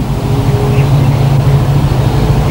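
Steady low hum with an even hiss, during a pause in speech.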